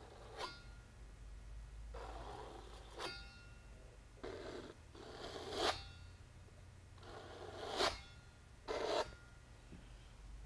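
A small metal palette knife scraping across a canvas, dragging thick clear tar gel and acrylic paint, in about five separate strokes, several ending in a sharper scrape.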